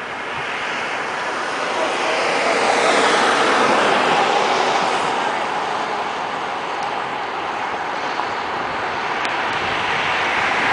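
The massed sound of a huge flock of birds wheeling overhead, a dense rushing wash of countless calls and wingbeats. It swells to its loudest a few seconds in, eases off, then builds again near the end.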